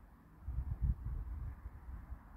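Low, uneven rumble of handling noise on a handheld phone's microphone as it is moved, loudest about a second in.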